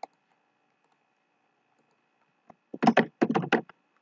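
Computer keyboard and mouse clicks: a single click at the start, then a quick run of about eight key presses about three seconds in, the Ctrl+C and Ctrl+V copy-and-paste keystrokes.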